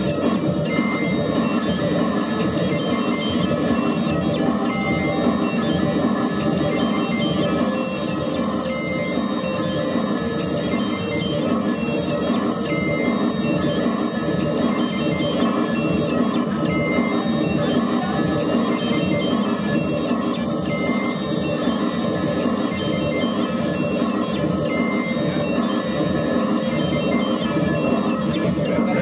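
Live electronic noise music played from laptops and a MIDI keyboard: a dense, unbroken wall of noise over a fast low pulse, with short high beeps coming back about every two seconds.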